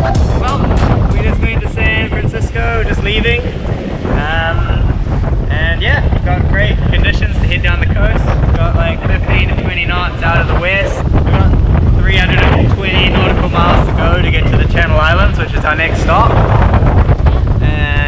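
Strong wind buffeting the camera microphone on a sailboat under way, a loud, steady low rumble with voices talking over it.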